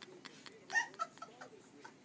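A person's short high-pitched squealing laugh about three quarters of a second in, with fainter laughter around it.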